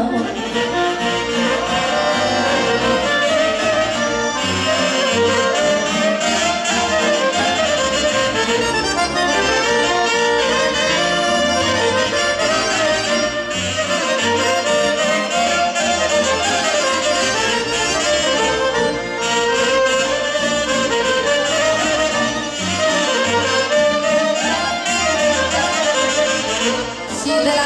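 Live band playing instrumental Romanian Banat folk dance music, with accordion, clarinet, saxophone and violins carrying a busy melody over a steady beat in the bass.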